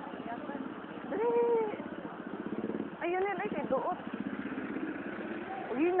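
A small engine running with a rapid, even pulse, and people's voices calling out over it three times in short rising-and-falling shouts.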